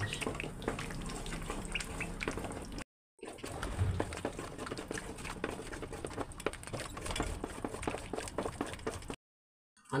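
Thick, bubbling soft soap paste being stirred hard with a wooden spoon in an aluminium pot: continuous wet squelching and irregular clicks of the spoon against the pot. This is soft homemade soap being re-cooked with added potash (lye) so that it will set. The sound breaks off twice into short silences.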